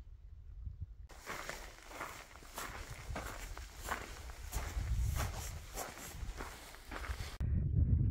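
A hiker's footsteps on a rocky, gravelly dirt trail, a steady walking rhythm of about two to three steps a second, with a low rumble underneath. The steps start about a second in and stop shortly before the end.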